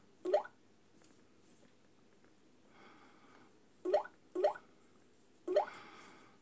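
Samsung WW9000 washing machine's touchscreen control panel giving short rising button-press tones as the menu is tapped through: one just after the start, then three close together about four to five and a half seconds in.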